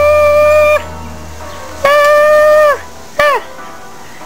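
A loud, horn-like pitched note sounded in three blasts. The first is held until just under a second in, the second runs for about a second from near the middle, and a short one comes about three seconds in. Each drops in pitch as it cuts off.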